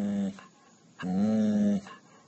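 A dog whining in two long, low, steady-pitched moans: one trailing off just after the start, the next coming about a second in and lasting under a second. The dog is whining at a rabbit it sees outside.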